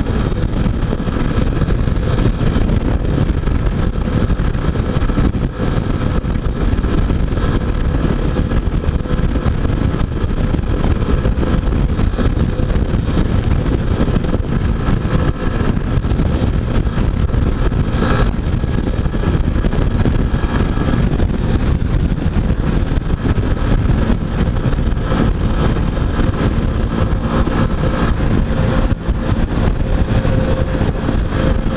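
Yamaha XTZ 250 Ténéré's air-cooled single-cylinder engine running steadily at highway cruising speed, heard through heavy wind rush on the bike-mounted camera microphone. A single brief click about eighteen seconds in.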